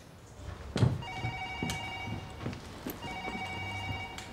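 A telephone ringing with a steady electronic tone that starts about a second in, breaks off briefly near three seconds and rings again. A sharp thump just before the ringing starts is the loudest sound, and a few lighter knocks come under the ring.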